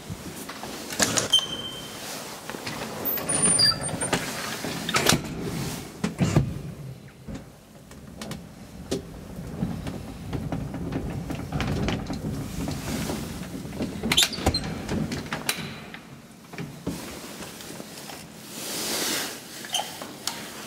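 Small old traction elevator cab travelling between floors. Sharp clicks and knocks come early on, with a short high beep about a second in, then the cab runs with a steady low rumble, and a few more knocks come around two-thirds of the way through.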